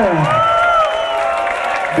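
Concert crowd cheering and whooping as a song ends, with held voices sliding down in pitch at the start and a single rising-and-falling whoop just after.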